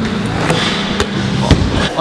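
BMX bike knocking and landing on wooden skatepark ramps: three sharp knocks about half a second apart, the last the loudest, over a steady low hum.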